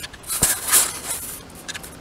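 Camera handling noise: a sharp knock about half a second in, then about a second of loud rustling and scraping against the microphone as the camera is picked up and turned.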